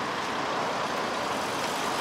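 Steady vehicle noise from the street: a low, even hum of road traffic and engines.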